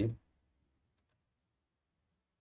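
A computer pointing-device button being clicked: two faint ticks close together about a second in, the press and the release.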